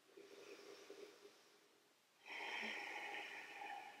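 A woman breathing at rest: a faint stir in the first second, then after a brief silence one long, steady breath of about a second and a half that ends just before the next words.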